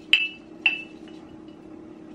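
A utensil clinking twice against a ceramic mug as matcha powder is mixed into a little hot water, each clink ringing briefly, within the first second.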